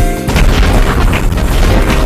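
Music with clear notes breaks off a moment in, giving way to a loud, dense low rumble of booming destruction sound effects in an animated film's soundtrack, as a town goes up in flames.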